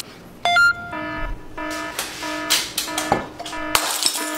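An electronic sound-effect jingle: a quick rising run of short tones, then short beeping notes repeating about twice a second, with a few sharp clicks between them.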